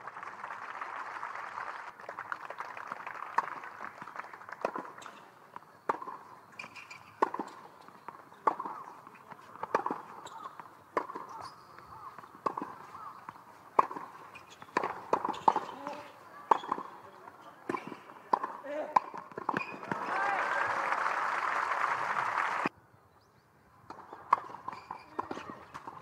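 A tennis rally on a hard court: sharp ball-on-racket strikes, roughly one every second and a quarter, with ball bounces and players' footsteps between them. Brief crowd applause comes at the start and again near the end after a point is won, and it cuts off abruptly.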